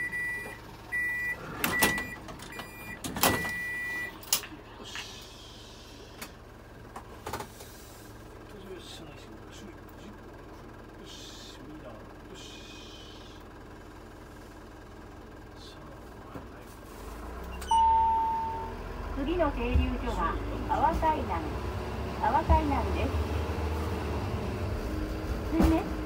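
Door-closing warning beeps from the Asa Kaigan Railway DMV, a high chime pulsing on and off for the first few seconds, with two thumps as the door shuts. After a stretch of quiet cabin hum, the vehicle's engine rumble rises near the end as it pulls away, with a short beep.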